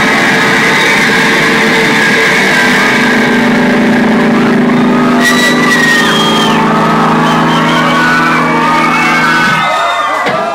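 Live indie rock band playing loud, held guitar chords through a club PA, with shouts and whoops from the crowd. The sound dips briefly near the end.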